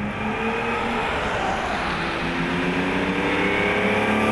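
1965 Lamborghini 350 GT's V12 engine accelerating, its pitch rising, then dropping once about halfway through as it changes up a gear and climbing again.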